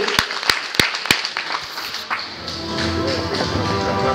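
Rhythmic clapping, about three claps a second, stops a little over a second in. About two seconds in, music starts with steady held notes and a bass line.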